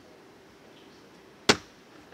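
Faint room tone, then a single sharp knock about one and a half seconds in.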